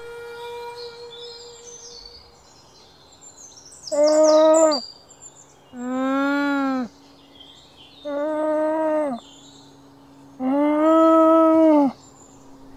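Llama humming: four drawn-out nasal calls about two seconds apart, each lasting about a second, the second one bending up and down in pitch. Faint birdsong chirps lie beneath, and a held musical note fades out at the start.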